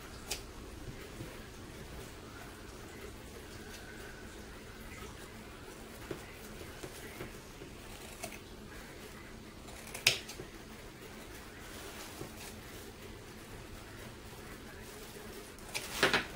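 Scissors snipping through tulle loops: a few scattered short snips, the sharpest about ten seconds in, over a steady low room hum.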